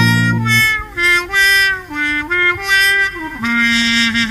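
Instrumental passage of a Thai luk thung song recording: a lead instrument plays a melody of short notes stepping up and down over the band, with no singing.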